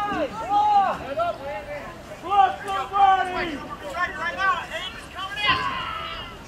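Several high-pitched voices calling out and shouting, at times two at once, over a light background hubbub of voices.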